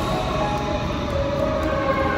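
Metro train running in an underground station: a steady deep rumble with held whining tones that step in pitch.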